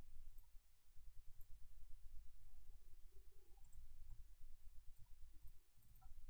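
Faint computer mouse clicks, a handful of scattered single clicks, over a low background rumble.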